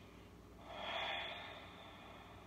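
A woman's audible breath out, about a second long, starting about half a second in, while she holds a deep side-lying stretch arched over a ball.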